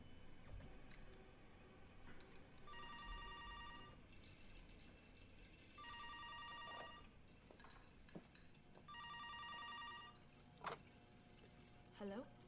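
Electronic telephone ringer warbling three times, each ring about a second long and about three seconds apart, then a single clack as the handset is picked up.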